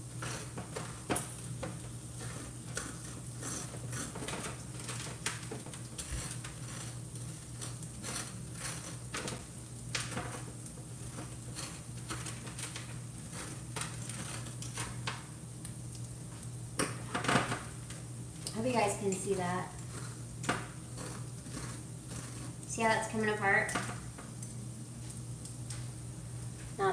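A metal fork scraping strands of cooked spaghetti squash from its halves, in repeated light scrapes and clicks, with one sharper knock about two-thirds of the way through. Under it runs a steady low hum and a faint sizzle of sausage frying in a cast-iron skillet.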